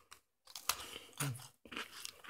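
A person biting into a crisp cookie and chewing it: after about half a second of quiet, a few short, sharp crunches.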